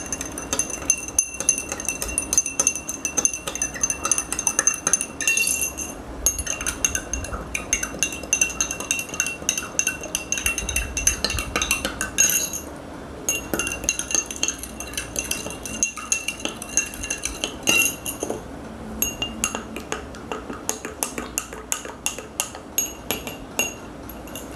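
Steel spoon stirring water in a drinking glass, clinking rapidly against the sides with a ringing glass tone. The stirring comes in four bouts, one glass after another, with short pauses between them.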